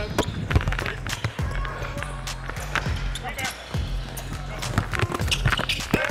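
Basketball bouncing and players running on a hardwood court during a fast break, with short sharp knocks throughout, over background music with a steady low beat.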